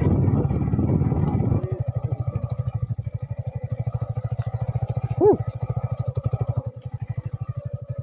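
Yamaha MT-15's single-cylinder four-stroke engine running at low revs, its firing pulses steady and even as the bike rolls slowly along.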